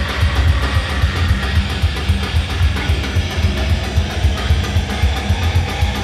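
A heavy metal band playing live: electric guitars and bass over a drum kit with fast, even drumming.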